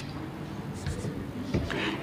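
Chalk writing on a chalkboard: a few short, faint scratchy strokes about midway and again near the end.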